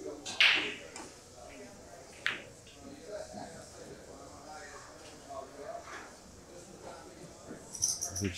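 A pool cue tip strikes the cue ball about half a second in with a sharp click. About two seconds later comes a second sharp click as the cue ball hits the one ball on a safety shot. Faint voices murmur underneath.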